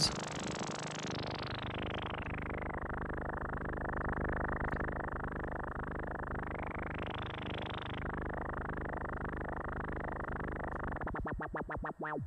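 Eurorack synthesizer tone through a CEM3320-based four-pole voltage-controlled filter (PM Foundations 3320 VCF), its cutoff swept by an LFO running at audio rate, which gives a dense, buzzing, modulated tone. The tone darkens over the first couple of seconds, brightens briefly past the middle, and near the end breaks into fast pulsing.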